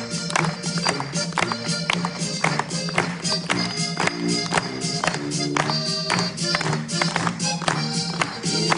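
Button accordion playing a polka over a recorded band backing track, with a steady beat.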